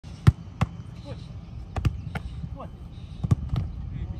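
Football being struck and caught in a goalkeeping drill: a run of sharp thuds of boot on ball and ball on gloves, about seven in four seconds, the loudest one near the start.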